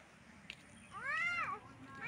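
A child's voice saying a single drawn-out "haan?", rising then falling in pitch, about a second in; the rest is faint background.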